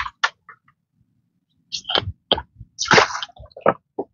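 Shallow muddy water splashing and squelching in irregular bursts, the loudest about three seconds in.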